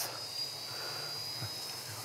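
Holybro X500 quadcopter's brushless motors spinning at idle while the drone sits armed on the ground. They are heard faintly as a steady high-pitched whine over a low hum.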